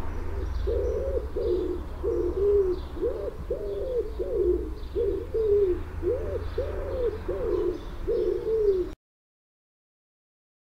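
Rock pigeons cooing: a run of low, rising-and-falling coos, roughly one and a half a second, with faint chirping of small birds above them. The sound cuts off suddenly near the end.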